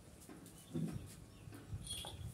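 A dog and a baby goat at play: one short, low animal sound about three-quarters of a second in, with faint scuffling around it.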